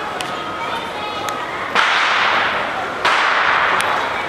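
Two firecracker bangs about a second and a half apart, each followed by a long echo, with a few fainter pops of firecrackers further off.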